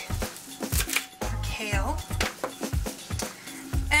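Background music with a steady beat and a singing voice.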